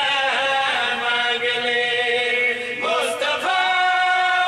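A group of men chanting together in long held notes; the pitch steps up about three seconds in.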